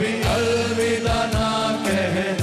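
Several men singing together into microphones over backing music with a drum beat.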